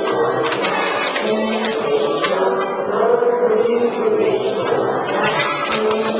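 A group of young children singing together, with scattered hand claps.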